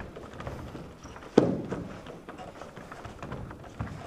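Bare feet shuffling and stepping on a wooden floor during karate free sparring, a run of light taps with one heavier thud about a second and a half in.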